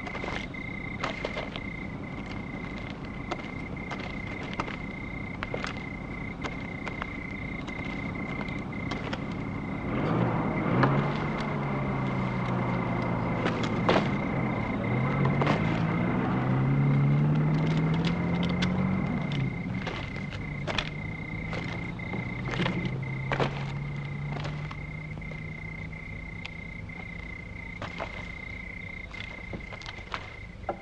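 A motor vehicle's engine grows louder about a third of the way in, its pitch rising and falling as it revs, and is loudest just past the middle before fading away. A steady high insect chirr and scattered clicks run underneath throughout.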